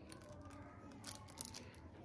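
Faint scraping and clicking of a spatula spreading cream over a layered cake, with a short cluster of sharper scrapes about a second in.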